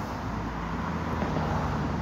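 Steady road traffic noise from passing cars, with a low engine hum underneath.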